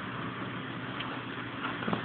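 Steady background hiss of room tone and recording noise, with two faint clicks, about a second in and near the end.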